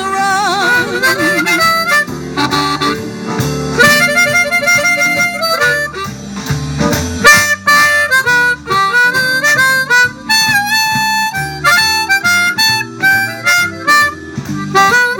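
Harmonica solo over a live band's backing in a blues-style instrumental break. It opens with a held note that wavers widely, then runs through a stepping melody.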